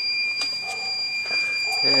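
The Iliminator 1750 W inverter's low-battery alarm screaming as a steady high-pitched tone. It is the warning that the battery bank's voltage has sagged toward the inverter's cutoff under the halogen heater's load.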